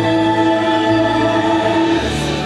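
Parade music with a choir singing a long-held chord; the chord changes at the very end.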